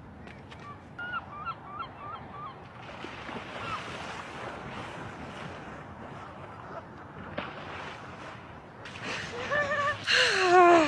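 Geese honking, about six short calls in quick succession, then splashing in shallow sea water as a person runs and wades in, over low surf. A person's voice rises near the end.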